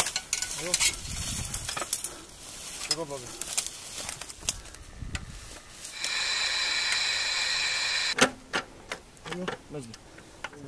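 Clicks and knocks of a TOW anti-tank missile launcher being assembled and connected by hand. Between about six and eight seconds in, a steady high whine sounds, starting and cutting off abruptly.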